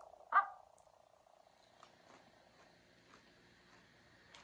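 A person biting into a potato chip with bean dip and chewing it: one short louder sound at the bite just after the start, then faint chewing crunches about every half second.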